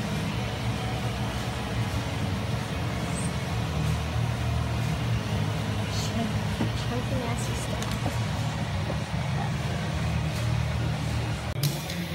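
Steady low rumble with an even hiss over it, the sound of a motor or machine running in the background, unchanging throughout.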